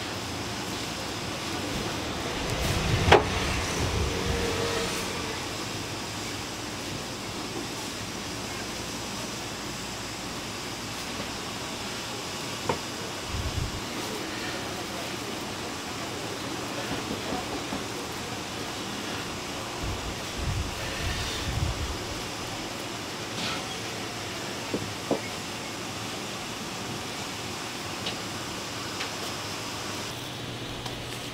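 Dumpling shop background: a steady noise bed with faint voices, broken by a few sharp clicks and knocks of handling, the loudest about three seconds in.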